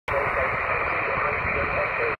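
Shortwave radio receiver static: a steady hiss squeezed into a narrow radio audio band, with a faint voice in the noise.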